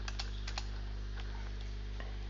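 A few computer keyboard keystrokes in the first half second, then only a steady low electrical hum.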